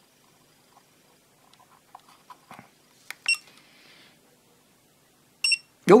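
A FNIRSI LCR-P1 component tester beeping twice, short and high, about two seconds apart. The second beep comes as it finishes testing a Zener diode and shows the result. Faint clicks before the beeps come from the diode's leads being handled in the test socket.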